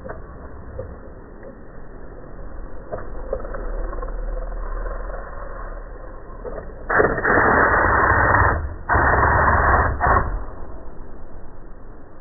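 Two loud bursts of a power impact wrench running, each about a second and a half, after several seconds of low workshop background.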